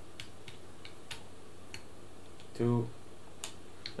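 Hex keys ticking lightly against the mount's metal bolts as the screws are tightened, a handful of faint, scattered clicks.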